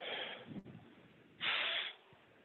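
A man breathing hard between dumbbell lunges: two heavy breaths, about a second and a half apart.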